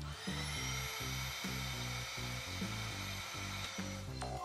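Canister vacuum cleaner motor whining up to speed within the first half second, then running at a steady high pitch until it cuts off near the end. Background music with a steady bass line plays underneath.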